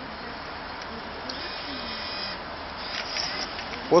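Banknote acceptor of a water vending machine whirring for about a second as its motor draws in a paper note, followed by a few light clicks.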